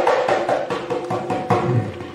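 Assamese dhol, a two-headed barrel drum, played in a rapid run of strokes with the heads ringing. A deep bass stroke lands about one and a half seconds in, then the sound fades.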